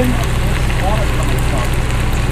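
Fish and vegetables sizzling in an electric skillet over a steady low hum.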